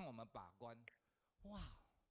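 Near silence in a pause of speech, with a few faint spoken syllables in the first half-second and one short falling voiced sound about one and a half seconds in.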